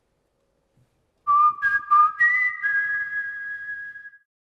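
Broadcaster's end-card sound logo: a short jingle of clear, held notes that step upward, struck four times in quick succession about a second in, the notes ringing on together and fading out at the close.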